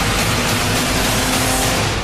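A car driving, heard as a loud rushing noise that cuts off just before the end, mixed with music.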